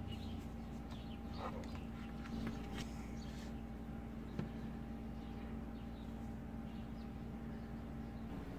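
Quiet room tone with a steady low hum, with a few faint handling sounds and one small tap about four and a half seconds in.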